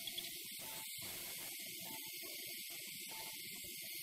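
Steady hiss with faint, indistinct room noise beneath it.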